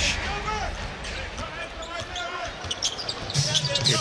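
A basketball being dribbled on a hardwood court over the murmur of an arena crowd during live play.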